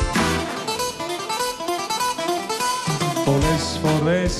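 Live band playing an instrumental passage of a Greek popular song, led by a quick plucked-string melody.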